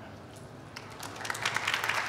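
Audience applause, starting about a second in and building quickly.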